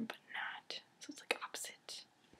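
A young woman whispering quietly under her breath after a short spoken word, with a few soft sharp clicks.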